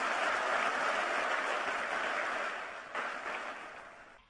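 Audience applauding, many hands clapping at once, fading away over the last second.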